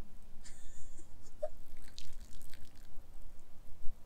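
Urine trickling and splattering onto dry grass and dirt from a female urination device, with a low rumble of wind on the microphone.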